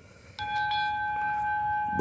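A steady bell-like ringing tone, one pitch with overtones, starting suddenly about half a second in and holding without fading.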